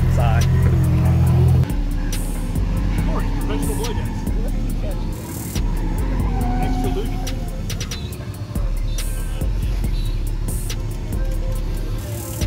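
Car engine running, with background music over it.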